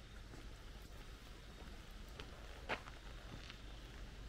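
Faint footsteps on pavement over a low steady rumble, with one sharper click a little under three seconds in.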